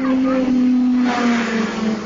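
Fairground ride machinery running, a loud steady low drone that sags slightly in pitch about a second in, with a burst of hissing noise over it for the second half.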